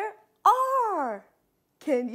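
A woman's voice: a phrase ends at the start, then about half a second in comes one long drawn-out call that rises briefly and then slides down in pitch, and talking starts again near the end.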